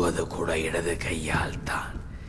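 A man's voice, low in pitch, speaking in short phrases.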